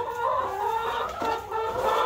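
Domestic hens clucking in a coop, a run of drawn-out, steady calls with slight rises and falls in pitch.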